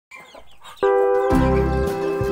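Faint clucking of chickens for under a second, then background music with a sustained chord comes in suddenly about a second in and dominates, a bass line joining shortly after.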